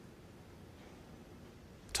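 Faint, steady room tone, a low hiss with no distinct events, in a pause between lines of dialogue; a voice begins right at the very end.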